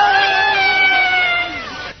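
A man's voice holding one long excited shout, its pitch sliding up at the start, held steady, then falling away near the end.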